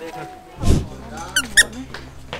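Editing sound effects over background music: a loud whoosh about a third of the way in, then a quick run of high, squeaky cartoon chirps, used as a comic dash effect for someone running.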